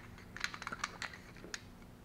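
A scatter of light, sharp metal clicks and ticks as small steel parts of a hydraulic unit are unscrewed and handled by hand, with a tool set down.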